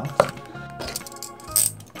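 A small hard-plastic figure and its blind-box packaging handled on a desk: one sharp click shortly after the start and a brighter clicking rattle past halfway. Background music plays throughout.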